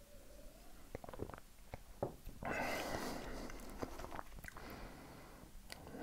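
Quiet sipping and swallowing of a fizzy cola-type drink from a glass, with small wet mouth clicks, then a soft breathy rush of about a second and a half from about two and a half seconds in.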